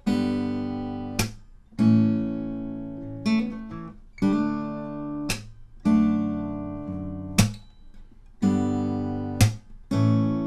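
Steel-string acoustic guitar fingerpicked slowly through D, D/F#, G and A chords, each plucked chord left ringing. A sharp percussive smack cuts in about every two seconds: the strumming hand slapping down on the strings.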